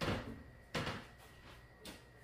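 Off-camera kitchen knocks: one at the start, a louder, sharper one under a second in, and a faint third near the end, each dying away quickly.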